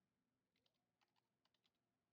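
Near silence, with a few very faint computer keyboard keystrokes about half a second to a second and a half in.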